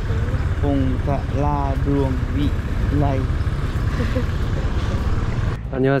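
Steady low rumble of a moving vehicle under people talking. It cuts off abruptly near the end.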